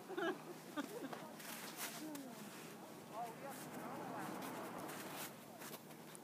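Faint, indistinct talk from several people, with a few short clicks scattered through.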